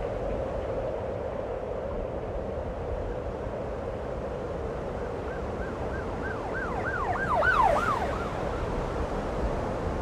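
Siren yelping in quick rising-and-falling sweeps over a steady noisy rumble with a hum; the sweeps come in about halfway through, grow louder, and stop a few seconds later.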